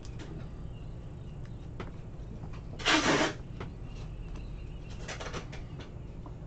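Trading cards being handled and shuffled by hand: faint rustles and clicks of cards sliding over one another, with one brief, louder swish about three seconds in.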